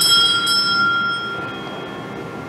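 A high bell struck, ringing with several clear overtones and fading over about a second and a half, with a second stroke about half a second in. Soft sustained low tones lie beneath it.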